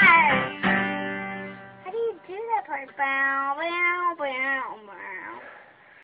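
An acoustic guitar strums a chord that rings out and fades over about a second. It is followed by several short, high, voice-like calls that rise and fall, each under a second long.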